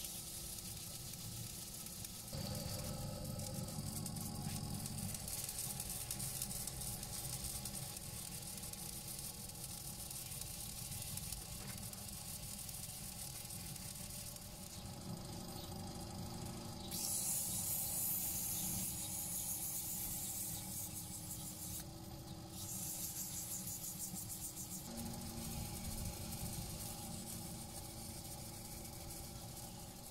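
Wood lathe running steadily while a paper towel rubs against the spinning pussy willow workpiece to apply finish. The sound changes abruptly a few times.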